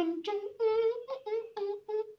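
A man humming a catchy tune in a high voice with his lips closed: a string of short, bouncy notes, about four a second, hopping between two pitches.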